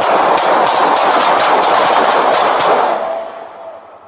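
Police gunfire: a rapid volley of shots running together into one dense, loud crackle for about three seconds, then dying away.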